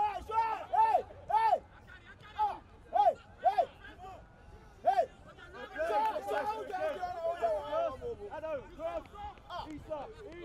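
Men's voices shouting short calls across a football pitch: a string of single shouts, then several voices calling at once from about six seconds in.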